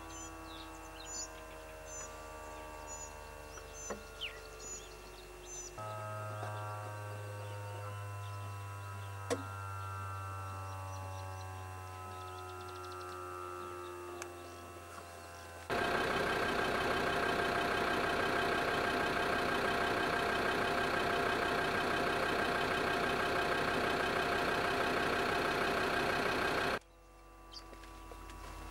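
Vehicle engine running. Through the first half its pitch slowly drops, then a much louder, steady engine sound comes in suddenly about halfway through and cuts off suddenly near the end.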